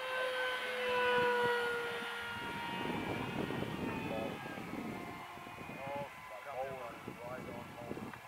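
Electric motor and propeller of a radio-controlled foam airplane whining as it flies overhead, its pitch drifting slightly lower over the first couple of seconds. The whine then fades under a rushing noise and faint voices.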